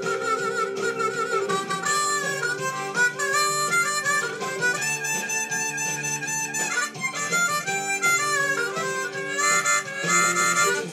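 Harmonica played with cupped hands: a melody of sustained notes, with one long held note in the middle.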